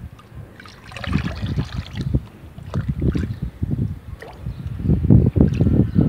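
A red plastic mug scooping through a bucket of brown homemade liquid fertilizer, the liquid sloshing and splashing unevenly, louder toward the end.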